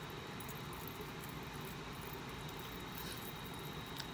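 Steady, faint background noise with a thin high tone running through it; no distinct sounds stand out.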